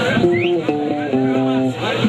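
Amplified electric guitar playing a short run of held chords that change about every half second, heard live at a rock show.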